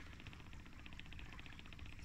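A 45 lb Minn Kota 12-volt electric trolling motor, fed 18 volts, running slowly at about 175 watts. It is a faint, steady hum with a rapid, even ticking.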